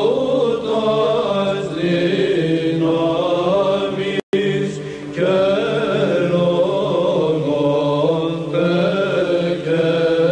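Greek Orthodox Byzantine chant: voices singing a slow, melismatic psalm melody in Greek over a steady held low drone (the ison). The sound cuts out completely for a split second a little over four seconds in, then the chant resumes.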